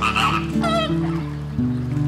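Flamingos honking: two short goose-like calls near the start, the second with a wavering pitch, over background music with held low notes.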